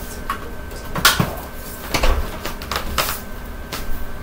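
A few sharp plastic clicks and knocks, about a second apart, as the dust canister of a Hoover WindTunnel 2 upright vacuum is handled and lifted off its body; the vacuum is switched off.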